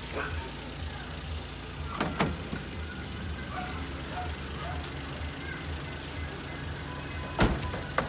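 Doors of a Suzuki DA64W van being shut: the sliding rear door closes with a thud about two seconds in, and the front door closes with a louder thump near the end. A steady low hum runs underneath, likely the engine idling.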